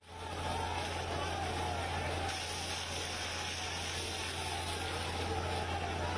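Police water cannon spraying into a crowd of protesters: the rushing hiss of the water jet mixed with the crowd's shouting, over a low steady hum.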